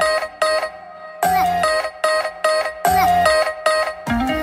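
A pop band playing with guitars and keyboard: a bright lead melody with held, sliding notes over a steady beat. The bass and drums drop out for about a second near the start, then come back in.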